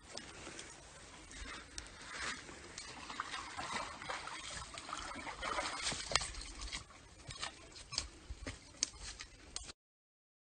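Faint, irregular sloshing and splashing of a person wading through a creek, with scattered clicks and ticks.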